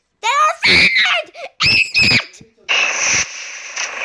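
A high-pitched voice making about three short wordless cries that glide up and down in pitch, followed by a steady hiss.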